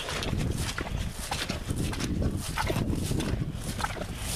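Footsteps of boots swishing and thudding through wet grass at a walking pace.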